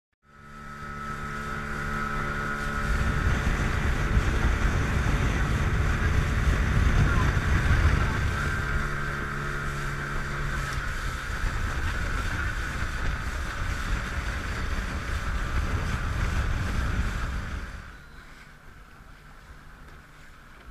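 Small boat's motor running under way, with wind and water noise on the microphone. The steady engine note turns rougher about halfway through, and about two seconds before the end the sound falls away sharply as the motor is throttled back.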